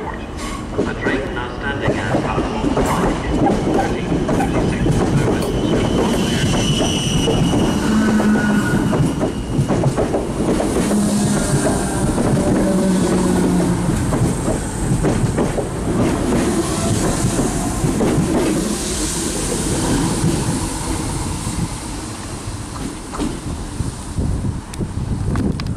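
Passenger trains moving over the station tracks: steady rumble and clickety-clack of wheels over rail joints and points, with brief wheel squeals about six to thirteen seconds in.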